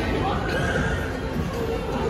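Background music and indistinct voices echoing in an ice rink, with one brief high-pitched call about half a second in.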